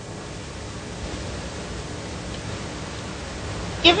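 Steady hiss of background noise with no distinct event: room tone, or the noise of the recording itself.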